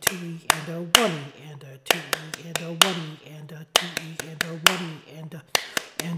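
Hand claps in an uneven march rhythm, some in quick pairs, clapping out a snare drum part over a man's voice counting the subdivisions aloud ("one-e-and-a, two-e-and-a").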